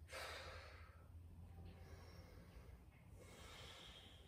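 Near silence with a person's soft breathing: an audible exhale at the start that fades over about a second, and a fainter breath about three seconds in, over a low steady hum.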